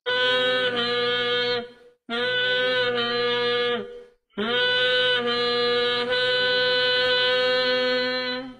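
A conch shell blown three times in long, steady, held notes of one pitch: the first two last nearly two seconds each, the third about four seconds, with a brief pause between them.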